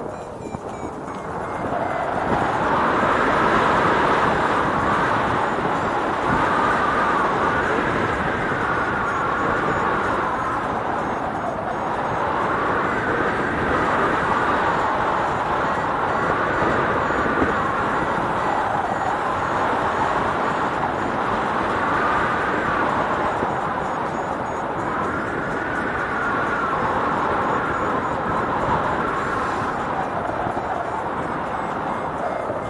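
Steady wind rush on the camera microphone of a paraglider in flight, swelling and easing every few seconds as the glider turns.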